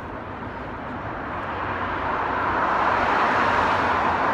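Street traffic noise, a motor vehicle approaching and getting steadily louder over about three seconds, then holding.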